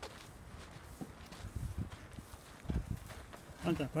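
Footsteps on sandy gravel ground: a few soft, irregular steps, with a voice starting to speak right at the end.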